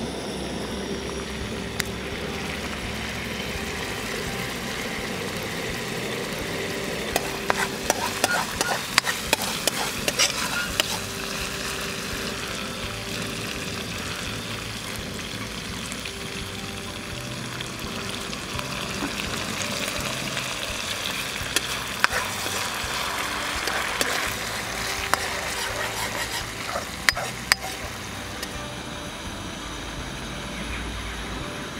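Sauce sizzling in a frying pan over a camping gas stove, with a metal spatula stirring and scraping against the pan. Clusters of sharp clicks and knocks from the utensil come about seven to eleven seconds in and again near the end.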